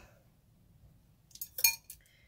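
A few short, sharp clinks about one and a half seconds in, after a quiet start: makeup brushes knocking together as they are handled and set down.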